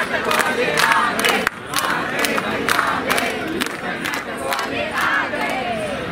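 A group of young performers clapping in a steady rhythm, about two claps a second, while shouting together in unison.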